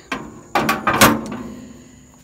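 Steel stacking parts bins being handled and set down against each other: a few metal clanks, the loudest about a second in, each ringing briefly.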